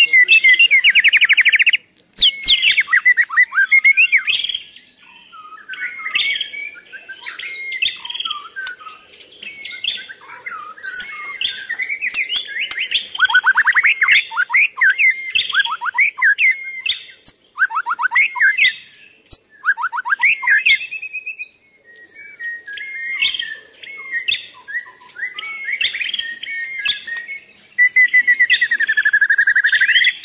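Wild birds chirping and singing: a busy run of varied calls, fast trills and quick repeated notes, with short lulls about two seconds in and again a little past twenty seconds.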